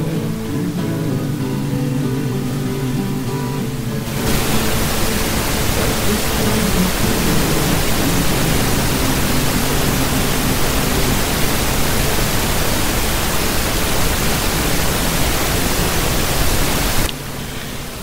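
Acoustic guitar music for about the first four seconds, then a loud, steady hiss like static that starts suddenly and cuts off sharply about a second before the end.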